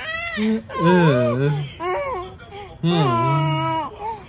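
A three-to-four-month-old baby cooing in long, drawn-out, pitch-bending vocal sounds. A lower adult voice answers her with short hums.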